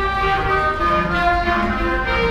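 Student woodwind ensemble of clarinets and flutes playing together, a melody of held notes that move from one pitch to the next over sustained lower harmony.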